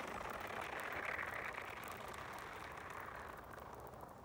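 A shoe sliding down a steep driveway coated in sheet ice from freezing rain: a steady scraping hiss that slowly fades as the shoe slides away.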